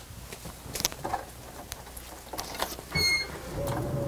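Small clicks and rustles, a short dashboard chime about three seconds in, then the Workhorse chassis's 8.1-litre gas V8 starting quickly and settling into a low idle near the end.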